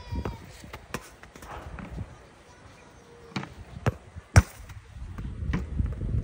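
Soccer balls kicked and bouncing, heard as a few separate sharp thuds. The loudest comes about four and a half seconds in.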